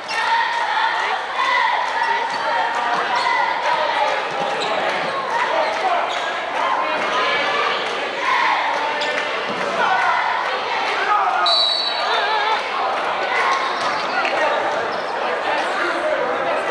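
A basketball being dribbled on a hardwood gymnasium floor during play, with a crowd of spectators calling and talking in the big, echoing gym. About eleven and a half seconds in comes a short, high referee's whistle blast.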